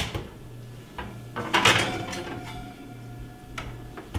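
Oven door of an electric range opened and the metal oven rack and springform pan handled: a click at the start, a metal clatter a little under two seconds in, which is the loudest sound, and another knock near the end.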